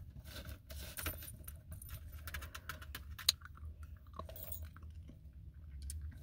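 Steady low rumble inside a car cabin, with scattered soft rustles and clicks and one sharp click a little past halfway.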